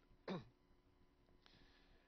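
Near silence (room tone), with one short vocal sound from a man at the microphone about a quarter second in.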